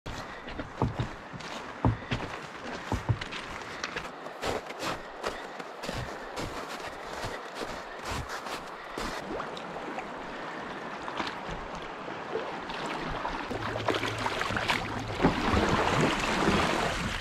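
Footsteps crunching on gravel railway ballast and then on snow, uneven separate steps. Near the end, moving river water grows louder.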